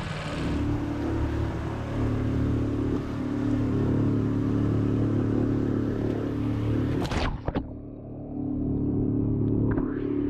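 Small four-stroke outboard motor (a 5 hp Tohatsu) pushing a sailboat at cruising speed, a steady hum with a rushing hiss of water along the hull. About seven seconds in there is a brief knock, and the hiss drops away while the engine keeps running.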